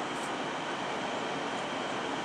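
Airbus A330 jet engines running at taxi power, heard from a distance as a steady, even rushing noise.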